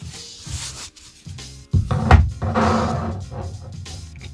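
Background music, and about two seconds in a canvas is set down on the tabletop with a knock and slid into place with a rubbing sound.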